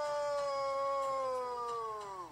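A man's voice in one long, drawn-out shout of "Nooo!", held on one pitch and sagging down as it fades near the end: an imitation of Darth Vader's famous cry.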